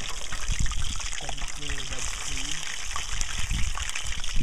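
Hot oil frying in a pan on a camp stove: a steady sizzling hiss, with a man's voice briefly in the middle.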